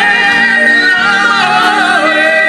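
A live dance band playing, with a voice singing long held notes with vibrato over the band.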